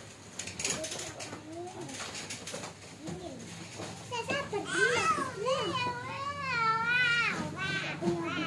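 A child's high, wavering voice, drawn out over the second half, louder than the rest. Before it, about half a second in, a sheet of synthetic leather rustles as it is handled.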